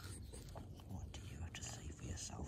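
Soft rustling and scratching as a lop-eared rabbit's fur brushes against the phone's microphone, over a low rumble of handling noise.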